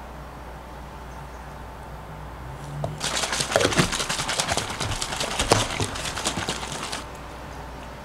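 A small plastic water bottle of water and drink powder shaken hard for about four seconds: a fast, rhythmic rattling slosh that starts and stops abruptly, the powder being mixed in.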